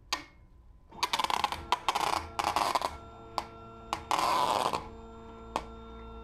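Clear packing tape unrolling off its roll with loud crackling in several pulls from about a second in, and again in one longer pull past the middle. From about halfway a stepper motor on the X-Winder filament winder turns the mandrel with a steady whine of several tones, with a few light clicks.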